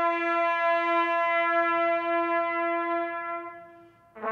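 A bugle call: one long held note that swells slightly and then fades away near the end, echoing faintly, with the next note about to begin.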